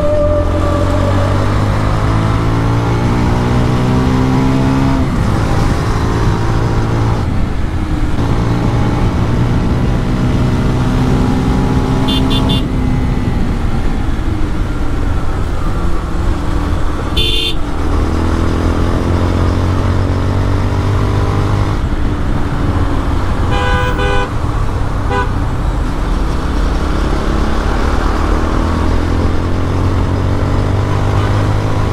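Motorcycle engine and exhaust running under way in traffic. Its pitch climbs as it accelerates and drops back at gear changes several times. Vehicle horns toot briefly a few times, around the middle and about two thirds of the way in.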